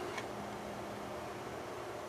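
Quiet steady background hiss of room tone, with no distinct knocks or clicks.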